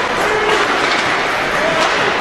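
The steady noise of ice hockey play: skates scraping the ice and the clatter of sticks, with faint voices in the rink.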